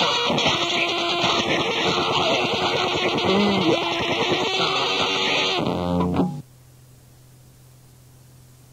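Loud, dense experimental no-wave band music that cuts off suddenly about six seconds in, leaving only a faint steady low hum.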